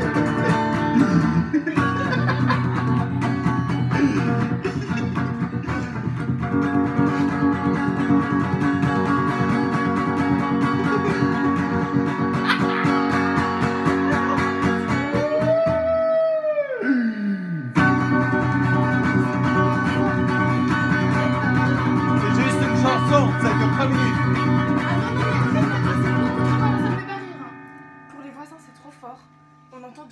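Electric guitar playing a chord-based instrumental passage. About fifteen seconds in, the chords stop and a single note slides steeply down in pitch over a second or two, then the playing resumes. It stops about three seconds before the end, leaving a faint low ringing.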